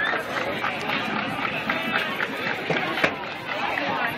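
Indistinct talking and chatter of people in the stadium stands, with a single sharp knock about three seconds in.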